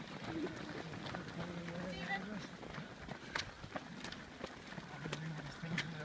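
Many runners' footsteps on a gravel path, a quick irregular patter of footfalls as a pack passes, with voices in the background.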